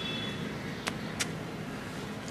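Steady low background rumble, with two sharp clicks about a third of a second apart, just under a second in.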